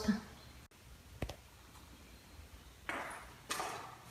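Quiet room tone with a single sharp tap about a second in, followed by two short noisy rustles near the end.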